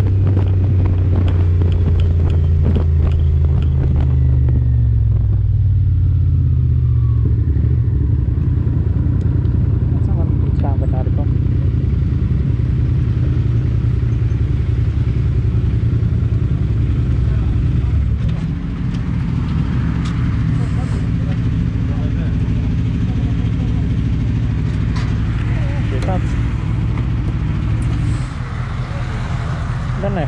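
Motorcycle engine heard from the rider's position, its note falling as the bike slows over the first several seconds. It then settles into a steady low idle.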